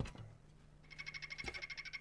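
Golden poison frog calling: a fast, even, high-pitched trill of about fourteen notes a second, starting almost a second in, with one soft knock partway through and a faint steady hum underneath.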